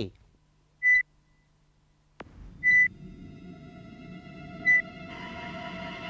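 Three short, single-pitched electronic beeps about two seconds apart, like a hospital heart monitor. A steady chord of held tones swells in near the end.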